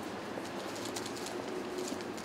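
Steady outdoor street background noise with scattered faint clicks and a short low steady tone about a second in.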